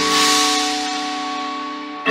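Front percussion ensemble of marimbas and vibraphones striking a chord and letting it ring, with a bright hissing wash like a crash cymbal on top, all fading over about two seconds. A new loud, deep chord comes in right at the end.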